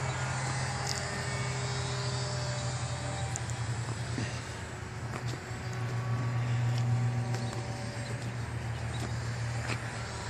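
Steady low hum, swelling briefly about two-thirds of the way through, with the faint thin drone of radio-controlled model airplanes' motors flying overhead.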